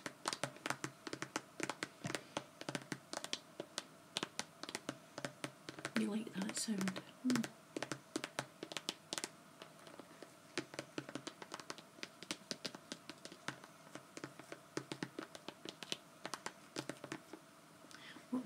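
Long acrylic fingernails tapping and scratching on a glossy vinyl cosmetic bag and its handle: a quick, irregular run of light clicks and scratches.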